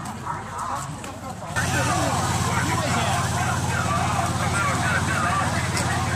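Market chatter from people nearby; about a second and a half in, a steady low rumble of wind buffeting the microphone sets in abruptly and runs on under the voices.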